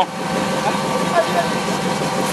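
V8 engine of a Jeep CJ5 rock crawler idling steadily at low revs.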